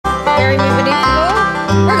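Bluegrass band playing: five-string banjo, acoustic guitar and mandolin over upright bass notes that change about every half second to second.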